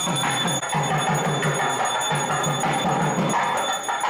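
Music with bells and percussion, with a beat of about three pulses a second.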